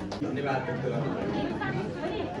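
Indistinct chatter of several people talking at once, with no clear words.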